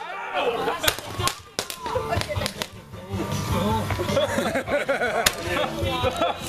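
Several people's voices outdoors, broken by a handful of sharp cracks from handheld fireworks spraying sparks.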